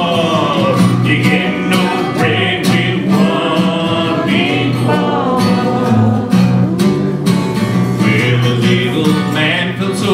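A kazoo held in a neck rack buzzing an instrumental melody with sliding pitches, over a steadily strummed acoustic guitar.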